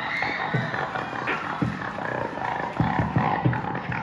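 Beatboxing into a handheld microphone through a PA, with irregular deep kick-like thumps and rough vocal bass sounds.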